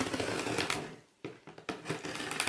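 Packing tape on a cardboard shipping box being slit along its seam with a handheld blade: a fast, crackling scratch for about the first second, then a few scattered ticks.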